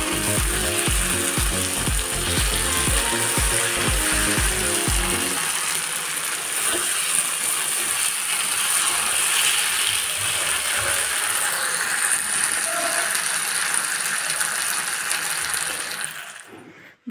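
Vegetable masala sizzling in a dark iron kadhai while a steel spatula scrapes and stirs it, a steady hiss throughout. Background music with a beat plays over the first five seconds or so, then stops.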